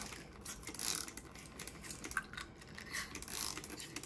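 Hand-pump spray bottle squirting water onto a toy car: several quick hissing sprays with the click of the trigger.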